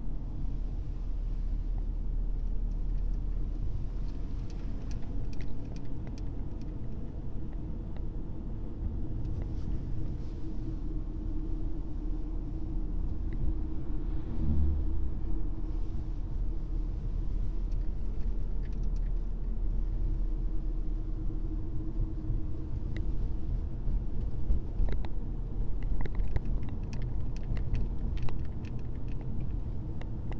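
Steady low rumble of a Honda car's engine and tyres heard from inside the cabin while driving, with a few faint light clicks in the later part.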